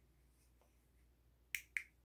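Near silence, then two short sharp clicks in quick succession, about a fifth of a second apart, near the end.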